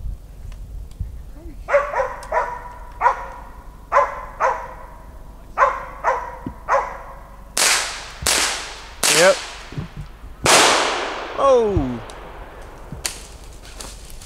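Treed squirrel dog barking steadily at the tree, about eight barks, signalling it has a squirrel up. Then four rifle shots within about three seconds, the last loudest with a long echo.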